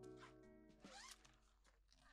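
Faint zipper of a tent door being pulled, two short strokes, over quiet background music that fades away.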